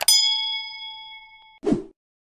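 Subscribe-button animation sound effect: a mouse click, then a notification-bell ding that rings and fades over about a second and a half. A short whoosh comes near the end.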